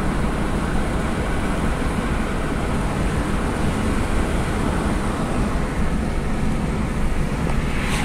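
Steady road noise heard from inside a moving car: tyres on asphalt and the engine's low hum, with no separate events.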